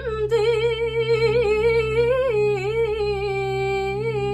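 A woman singing a traditional Armenian song, holding long notes with vibrato and stepping down to a lower note about halfway through, over a steady low backing tone.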